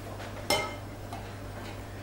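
A single light metallic clink about half a second in, with a short ring, as a small stainless steel water jug is handled against the mixing bowl. A steady low hum lies underneath.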